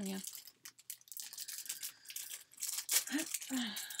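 Crinkle-cut paper shred packing filler rustling and crackling as hands dig through it in a box, in irregular bursts that get louder toward the end.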